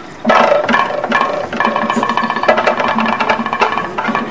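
Kathakali percussion accompaniment playing a fast, dense passage of drum strokes over a ringing metallic layer, coming in loudly about a quarter second in.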